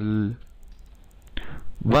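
A man's voice: one phrase ends just after the start and the next begins near the end, with a quiet pause of faint background noise between.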